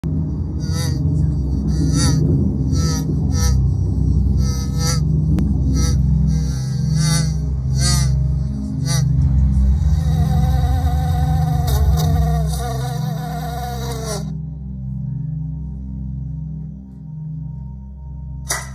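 Cartoon bee buzzing sound effect: a string of short, wobbly buzzes for the first half, then one longer wavering buzz lasting several seconds that cuts off suddenly. Underneath runs a low, plodding music bed.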